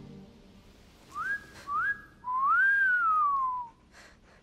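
A person whistling three clear notes in the dark: two short notes that slide up and hold, then a longer one that rises and slowly falls away.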